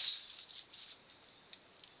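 Faint handling noise from a small shisha package held in the hands, with one light click about one and a half seconds in, over a thin steady high-pitched electronic whine.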